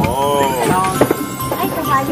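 People's voices and chatter, with one voice drawn out in a long rising-then-falling tone at the start and a sharp click about a second in.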